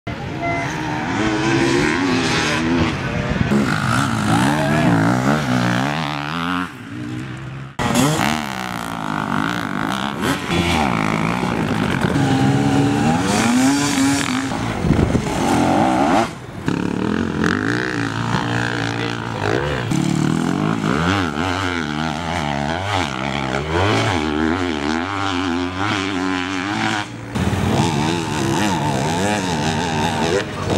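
Enduro motorcycle engines revving hard off-road, pitch climbing and dropping with throttle and gear changes, in several short takes that cut abruptly from one to the next.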